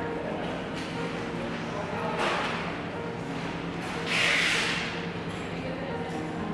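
People chewing mouthfuls of sandwich, with a soft rustling hiss about four seconds in, over a low steady hum.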